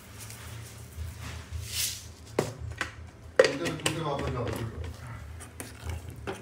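Sugar poured into a steel pot of simmering kheer, with a brief hiss, then two sharp metallic clinks about a second apart as the pot is handled and stirred.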